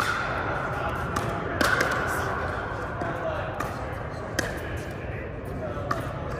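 Pickleball paddles striking a plastic ball during a rally, sharp pops about a second or so apart, over indistinct background voices.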